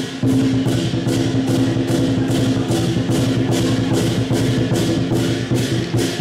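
Lion dance percussion: a large Chinese drum with clashing cymbals and a gong. The cymbals strike in a steady, fast beat over the ringing drum and gong.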